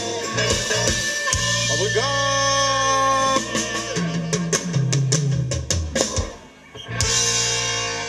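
Live Thai ramwong band music: guitar, bass and drums, with a long held note about two seconds in and a run of drum strokes later, dipping briefly near six and a half seconds.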